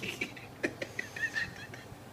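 Quiet, broken laughter in a few short bursts.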